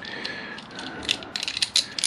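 Quick, irregular clicking and rattling of small metal parts as a bolt and bush are fitted by hand into a motorcycle clutch master cylinder's handlebar clamp.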